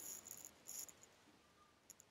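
Near silence: room tone with a few faint, brief ticks.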